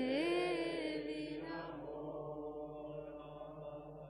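A mantra being chanted: one long held note that rises a little in pitch near the start, then slowly fades out.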